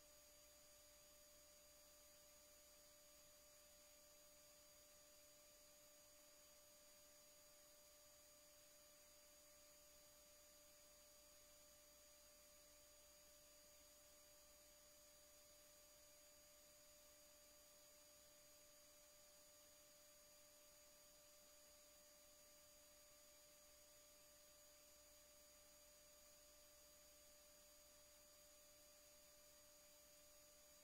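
Near silence: a faint, steady hum with a few constant tones that never change.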